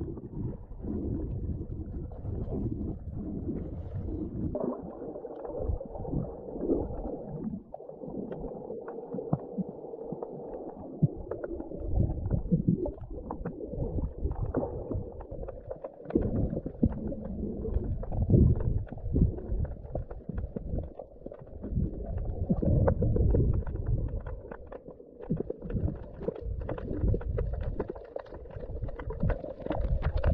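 Water sound picked up by a camera held underwater: a muffled, uneven rumble of moving water that swells and fades, with many small scattered clicks and crackles.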